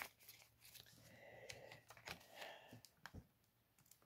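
Near silence, with faint rustling and a few soft clicks of paper banknotes and clear plastic binder sleeves being handled.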